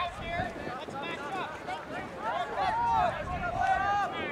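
Several distant voices shouting and calling over one another, loudest in the second half, with a low rumble of wind on the microphone.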